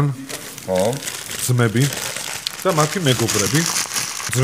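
Brown paper wrapper crinkling and rustling as it is handled and unfolded from around food, between stretches of men's talk.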